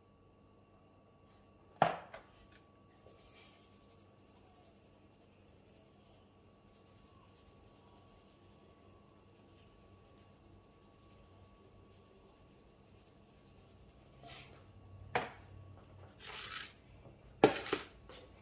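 Quiet room tone broken by sharp knocks of seasoning containers against a granite countertop: one about two seconds in, then a few softer rustles and two more knocks near the end, the last the loudest.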